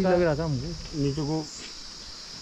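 A steady, high-pitched chorus of insects droning without pause, under a man's voice talking for the first second and a half.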